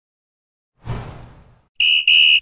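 Logo intro sound effects: a sudden deep boom that fades away over most of a second, then a loud, high, steady electronic beep sounded twice in quick succession near the end.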